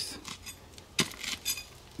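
A few faint, sharp clinks of stone, scattered through a short pause, with the clearest strike about a second in and another soon after.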